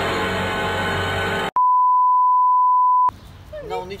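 Background music that cuts off abruptly about a second and a half in, replaced by a loud, steady single-pitch beep of the censor-bleep kind lasting about a second and a half, after which quiet talk follows.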